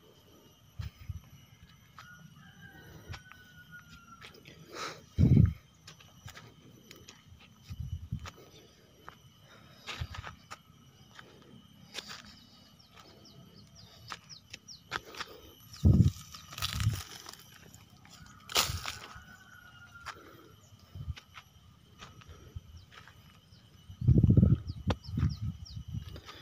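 Footsteps on dry soil and handling of a handheld camera: scattered thumps and light crackles over a quiet outdoor background, with a cluster of louder thumps near the end.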